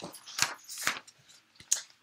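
Paper pages of a picture book rustling as the book is handled and a page is turned, in a few short brushes.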